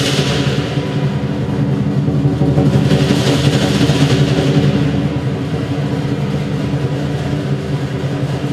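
Lion dance percussion: a fast rumbling roll on the big drum under a ringing gong and cymbals. Cymbal crashes come at the start and again about three seconds in.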